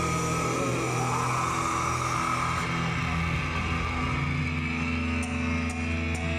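Amplified electric guitars and bass holding a steady, droning chord, with no clear drum beat.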